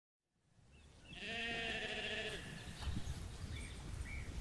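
A sheep bleating once, a single long wavering baa lasting about a second, starting about a second in.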